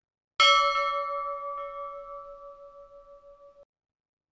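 A single bell strike that rings on with a steady pitch and slowly fades, wavering as it dies away, then cuts off abruptly after about three seconds. It is a bell rung at the blessing with the raised monstrance.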